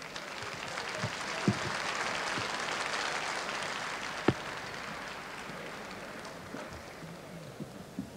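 Audience applauding. The applause swells over the first few seconds and then slowly dies away. A few sharp clicks cut through it, the loudest about four seconds in.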